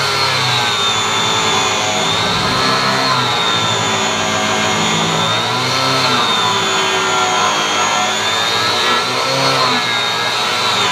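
Corded angle grinder grinding through the metal fixings of a trailer tub. It makes a loud, steady whine whose pitch rises and falls slowly, about every two seconds.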